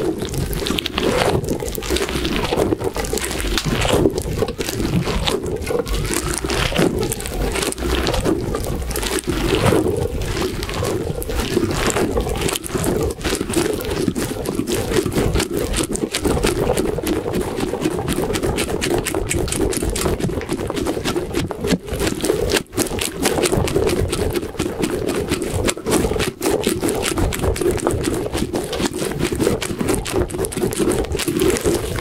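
A rubbery, spiky squishy ball being quickly squeezed, stretched and rubbed in the hands right against a microphone, making a dense, unbroken run of fast scrapes and rubs.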